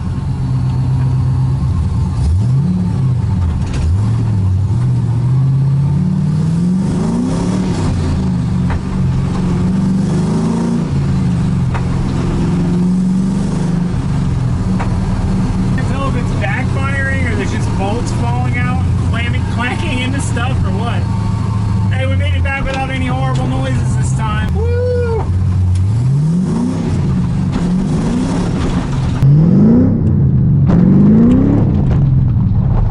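LS V8 engine of a swapped Mazda RX7, heard from inside the stripped cabin, pulling through the gears: its note climbs in pitch several times and drops back at each shift. A wavering higher sound runs through the middle stretch, and near the end the sound jumps to outside the car as it accelerates again, louder.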